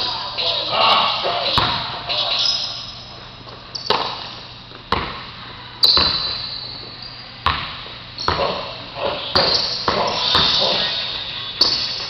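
Weighted 2-pound basketball bouncing on a gym floor: several sharp bounces at uneven gaps of about a second, each ringing on in the echo of the large hall.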